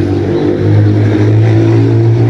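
A motor running steadily with a low hum, getting louder about half a second in.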